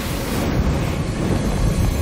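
A film soundtrack's steady, loud, low rumbling roar of wind and fire around a burning, collapsing stone stairway, with no single crash standing out.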